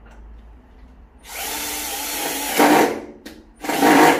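Electric drill driving a screw, most likely fixing a blind bracket to the window frame. It runs steadily for about a second and a half with a faint whine and gets loudest just before it stops. A second short burst follows near the end.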